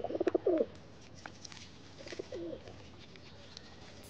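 White domestic pigeon cooing: a pulsed coo right at the start, the loudest sound, and a softer one about two seconds in.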